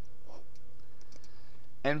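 Faint clicks and taps of a pen stylus on a tablet screen as a word is underlined and a full stop is added, over a steady low hum; a man starts speaking near the end.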